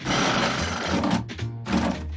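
A noisy rushing cartoon sound effect lasts just over a second, followed by a few shorter noisy hits, over background music with a pulsing bass line.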